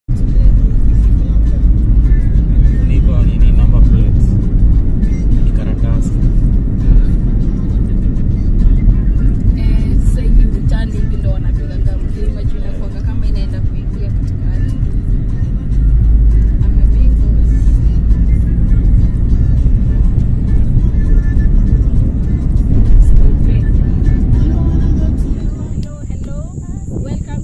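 A car driving along a highway, heard from inside: a loud, steady low rumble of road and engine noise, with voices and music faintly under it. The rumble drops away just before the end.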